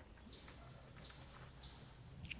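Faint tropical forest ambience: a thin, steady high-pitched insect whine sets in just after the start, with short high chirping calls repeating about every two-thirds of a second.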